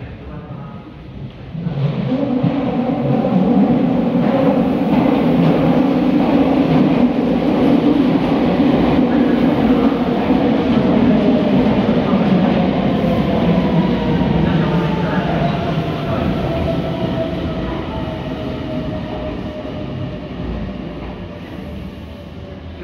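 Meitetsu 3100 and 3700 series electric train pulling into an underground station platform. Loud running and wheel noise builds sharply about two seconds in, then eases off as the train brakes, with a whine that falls steadily in pitch as it slows.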